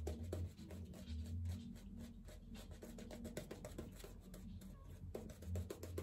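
Badger-hair shaving brush working lather onto a stubbled face: faint, quick scratchy strokes of the bristles over a steady low hum.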